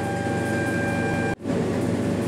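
Steady background hum and hiss with a faint high whine, cut off abruptly for an instant about a second and a half in.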